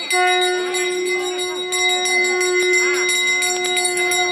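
A small hand bell rung continuously and rapidly, with a single long steady note with overtones held over it from just after the start.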